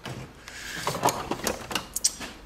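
A metal tool chest drawer being pulled open, with a quick run of clicks and rattles from the slide and the tools shifting inside, about a second in.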